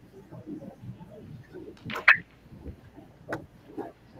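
Pool hall background murmur with sharp clicks of billiard balls striking: a loud one about two seconds in and a smaller one about a second later.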